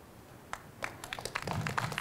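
Scattered light applause: a few irregular claps begin about half a second in and grow a little thicker toward the end.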